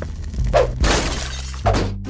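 Glass shattering, a television's screen smashed by a gunshot, heard as a loud crash about a second in with a second burst near the end.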